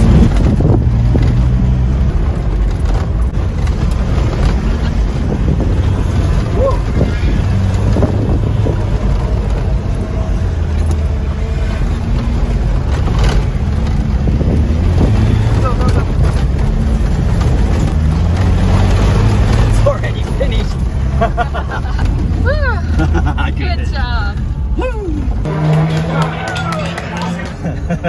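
Land Rover Defender 130's engine running hard inside the cabin on a dirt rally course, its pitch rising and falling with the throttle, with road noise and rattles from the rough track. The engine noise drops away about 25 seconds in.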